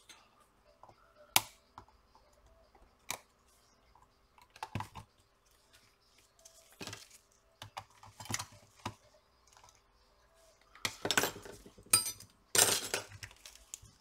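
Sparse small clicks and short scrapes from handling a small plastic power bank, its screws and tweezers on a silicone work mat, with a louder burst of handling noise near the end as the unit is picked up.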